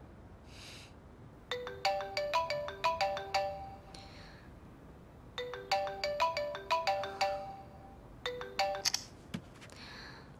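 Smartphone ringtone, a short melody of clear, quickly decaying notes, playing through twice. It breaks off early in a third round as the call is answered.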